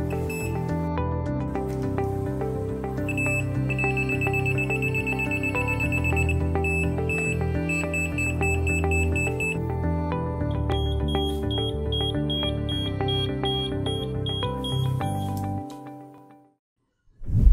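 Meterk non-contact voltage tester sounding its high warning tone as it detects voltage: a fast run of beeps a few seconds in, then slower beeps about twice a second. Background music plays under it and fades out near the end.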